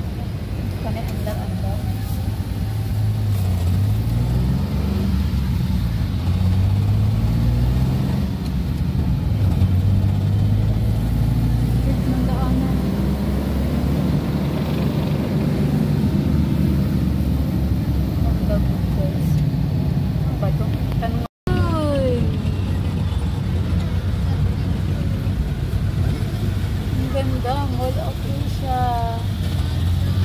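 Car engine and road noise heard from inside the cabin while driving. The engine note slowly rises and falls as the car speeds up and slows. The sound cuts out for an instant about two-thirds of the way through.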